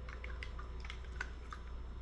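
Faint, scattered small clicks of a plastic dropper cap being twisted and drawn out of a small skincare bottle, over a low steady hum.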